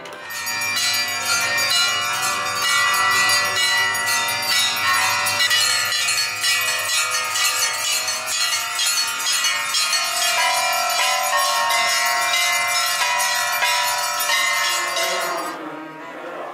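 Temple bells ringing continuously, many overlapping bell tones struck over and over, dying away near the end.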